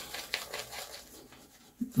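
Shaving brush swirling thick CK6-base shave-soap lather over the cheeks and beard: a soft, wet, crackling swish in irregular strokes.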